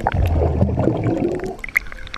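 Seawater churning and gurgling right against a camera at the surface of a breaking wave. It starts suddenly and is loud for about a second and a half, then thins to scattered splashes and droplet ticks near the end.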